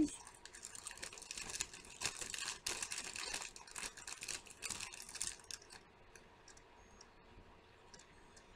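A clear plastic package of artificial fall leaves crinkling and rustling as hands dig leaves out of it. It fades out about five and a half seconds in, leaving a few faint ticks.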